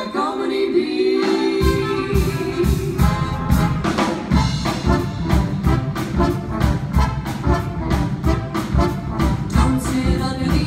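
Live swing band in a boogie-woogie number, brass and rhythm section. A held chord comes first, then under two seconds in the full band kicks in on a steady driving beat.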